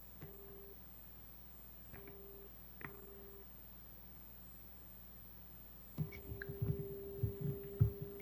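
A low steady hum from an open computer microphone with a few faint clicks. From about six seconds in comes a run of irregular knocks and taps close to the microphone, such as hands working at a desk and computer, with a steady tone under them.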